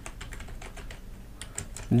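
Typing on a computer keyboard: a run of separate key clicks, sparse at first and coming thicker in the second half.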